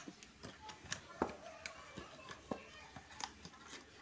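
Faint handling of a cardboard box and a paper booklet: scattered light taps and clicks as the booklet is taken out of the box.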